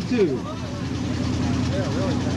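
A vehicle engine idling steadily, one unchanging hum, with a man's voice briefly at the start.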